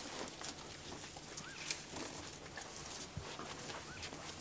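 A bird's short arched whistle, heard twice, over a faint quiet background with a few soft ticks.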